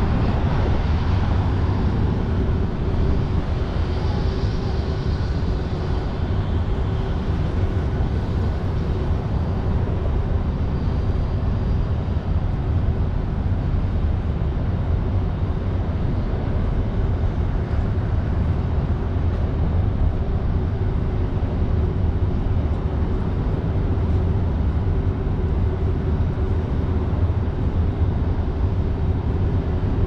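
Steady traffic noise from an elevated highway, with a low wind rumble on the microphone and a faint steady hum throughout.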